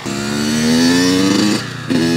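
Kawasaki KX100 two-stroke dirt bike engine pulling away under throttle, its note rising steadily for about a second and a half, then dropping off sharply as the throttle is let off, before picking up again right at the end.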